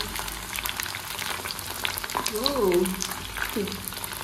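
Momos shallow-frying in hot oil in a wok: a steady sizzle with scattered small pops and crackles. A brief voice sounds a little past halfway.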